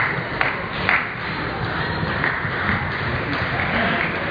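Table tennis ball clicking off bat and table in a rally: three quick sharp hits in the first second, about half a second apart, over steady background noise.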